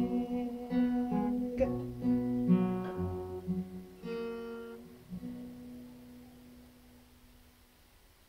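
Acoustic guitar playing the closing chords of a folk song: a few strummed chords and plucked bass notes, the last about five seconds in. The chords ring out and fade away to near quiet.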